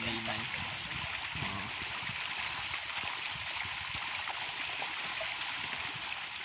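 A school of milkfish thrashing at the surface of a fishpond, a steady splashing rush of water.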